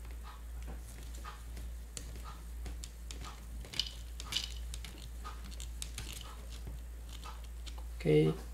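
Small hand screwdriver driving a screw into the plastic chassis of a Tamiya WR-02 RC kit, with light scrapes and faint clicks of plastic parts being handled and a couple of sharper ticks midway. A steady low hum runs underneath.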